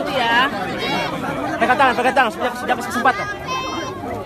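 Several people talking at once at close range in a crowd, their voices overlapping into chatter.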